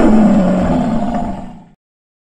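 A big cat's roar sound effect. It starts loud and fades away, stopping before two seconds.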